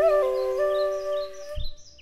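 Bamboo transverse flute ending a melodic phrase on a held note that fades out about a second and a half in, over a steady low drone that stops with it. Birds chirp throughout, and a soft low thump comes near the end.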